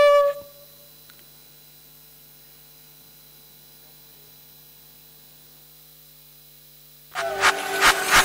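A flute note fades out just after the start. A steady low electrical hum from the sound system then runs through a pause of about seven seconds. Loud recorded music starts near the end.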